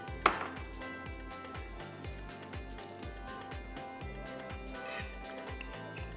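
Background music with a steady beat, and a single sharp clink of a ceramic bowl on the countertop just after the start.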